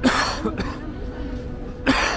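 A person coughing twice close to the microphone: two short, harsh coughs almost two seconds apart, the first at the very start and the second near the end.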